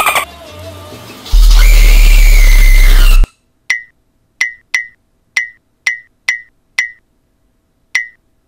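Jumpscare screamer on a video call: a very loud, distorted shriek with heavy bass, lasting about two seconds and cutting off suddenly. It is followed by a string of about eight sharp clicks, each with a brief high ping, unevenly spaced.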